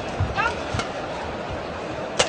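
Steady crowd and hall noise during a badminton rally, with a brief high squeak about half a second in and a single sharp crack just after.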